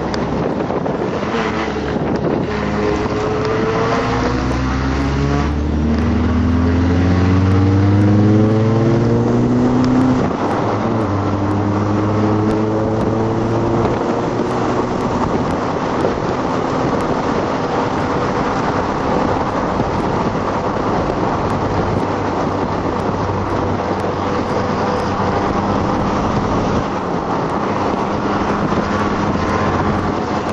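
Audi TT engine heard from inside the cabin at speed on a circuit. It climbs in pitch under hard acceleration for several seconds, drops abruptly about ten seconds in, then runs steadily over constant wind and road noise.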